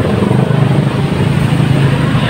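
A steady, loud, low engine drone with a fine pulsing texture, over faint background voices.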